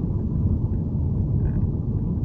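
Steady low rumble of a car driving along a road, heard from inside the cabin: engine and tyre noise at an even level.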